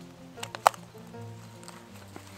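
Soft background music with sustained notes, and one sharp click about two-thirds of a second in as a plastic water bottle is handled and fitted onto a backpack shoulder strap.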